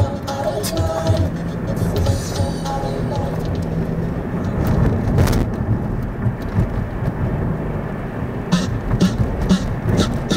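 Music playing over the low rumble of a moving car, with pitched melodic or vocal lines in the first few seconds and a regular beat of about two strokes a second coming in near the end.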